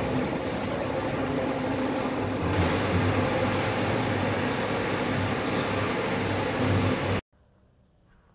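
Steady hum of electric wall fans running in a tiled room, cutting off abruptly about seven seconds in.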